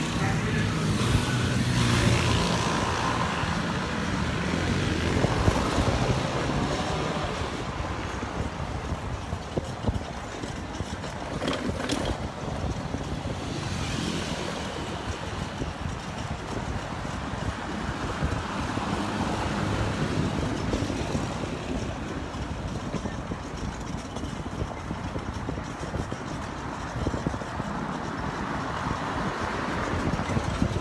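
Motorcycle engine running as it rides along a city street, with steady road and traffic noise.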